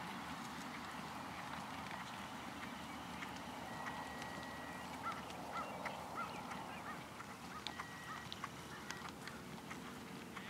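Outdoor ambience with short bird calls repeated several times past the middle, two brief steady whistled tones, and scattered faint clicks.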